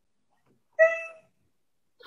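A single short, high-pitched cry about a second in, sharp at the start and fading within half a second.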